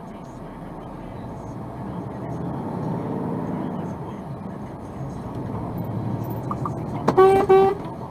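Truck engine pulling away and gaining speed, getting louder a couple of seconds in, then two short blasts of a vehicle horn near the end, aimed at a car that has cut in ahead.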